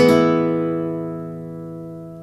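Jesus Bellido Especial classical concert guitar (spruce top, Brazilian rosewood back and sides) with a plucked chord ringing out, several notes sustaining and fading away steadily.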